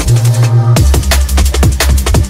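Liquid drum and bass from a DJ mix: a fast breakbeat over deep sub-bass. The drums drop out briefly near the start and come back in under a second in.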